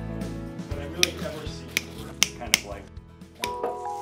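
Several sharp snips of cutters clipping the stems of silk ruscus greenery, over steady background music.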